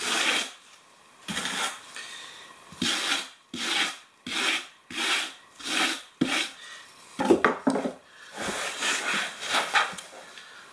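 Flat side of a trowel scraping thinset mortar across Kerdi-Board in about ten repeated strokes, pressing (keying) the mortar into the board's surface to improve the bond. A few sharper knocks come about seven seconds in.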